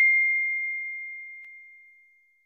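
Notification-bell ding sound effect: a single clear high tone ringing out and fading away steadily until it dies out near the end.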